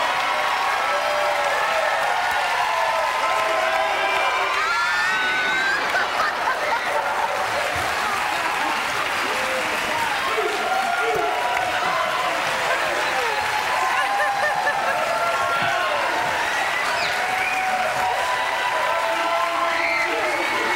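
Studio audience cheering and shouting over applause, many voices at once. The level stays steady throughout.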